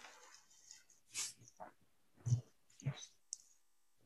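Faint mouth clicks and breaths from a person during a pause in the talk: a soft breath about a second in, two short low mouth noises past the middle, and one sharp click near the end.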